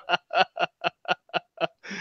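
A man laughing in short, rhythmic bursts, about four a second, fading out and ending in a breath.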